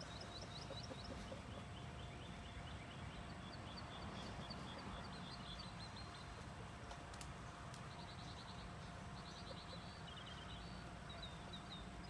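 Birds chirping in runs of short, high notes, with quicker trilled runs in the last few seconds, over a steady low outdoor rumble and a faint steady hum.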